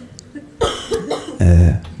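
A man coughing close to a handheld microphone: two short coughs starting about half a second in, then a louder voiced throat sound near the end.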